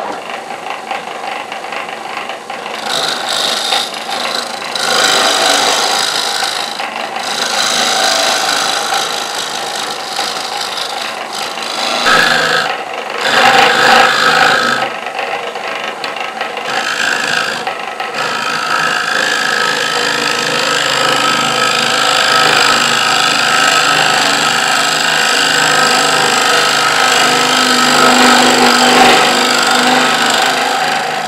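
Hand scraper cutting the face of a wooden flywheel mould spinning on a lathe, a continuous loud rasping scrape over the running machine, as the mould is faced down to depth. The cutting noise breaks off briefly a few times as the tool eases off the wood.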